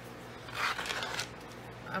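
A brief rustle of a cardstock strip being handled, lasting under a second.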